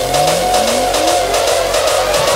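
Electronic dance track building up, with several synth sweeps rising in pitch over a steady held synth note and a fast, even pulse.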